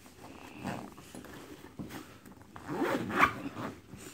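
Zipper on a fabric bowling bag being pulled along a compartment, in a short pull about half a second in and a longer, louder one near the end.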